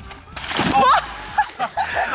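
A person stepping off the pool edge and dropping feet-first into a swimming pool: one splash, a short rush of water that starts about a third of a second in and dies away within about half a second.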